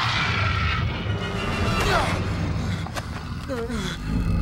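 Action-film soundtrack: dramatic music over a heavy, continuous low rumble, with short falling cries about two seconds in and again near the end.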